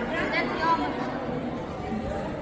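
Indistinct chatter of several people talking at once, with a few voices standing out briefly in the first second.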